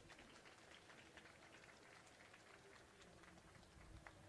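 Very faint, scattered hand-clapping from an audience: thin applause after a talk ends.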